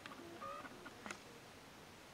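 Faint plastic clicks of a clear deli cup being handled, twice, with a few brief faint tones in the background.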